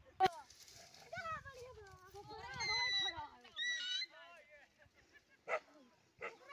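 Voices of people calling and shouting, with a sharp knock just after the start, two high shrill cries around the middle, and a short thud near the end.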